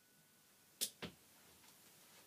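Two short, sharp clicks about a fifth of a second apart, close to a second in, against near silence.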